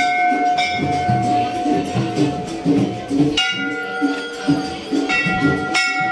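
Hanging brass temple bells struck several times, each strike ringing on and overlapping the last, with a sharp strike about three and a half seconds in and two more near the end.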